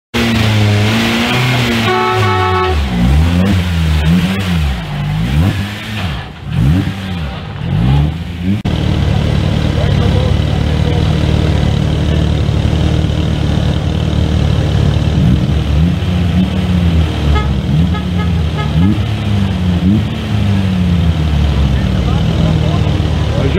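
Off-road race vehicles' engines revving, rising and falling in pitch again and again as they accelerate and change gear, with a short horn blast about two seconds in.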